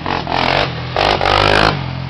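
Sport quad (ATV) engine running as it drives past, revving up in two loud surges about a second apart.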